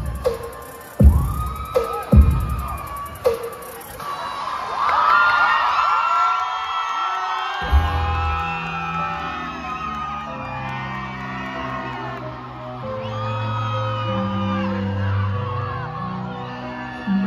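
Loud dance music played over a hall's sound system, hitting heavy bass accents for the first few seconds. An audience then cheers and whoops. About eight seconds in, a new track with long, held bass notes begins, and the cheering carries on over it.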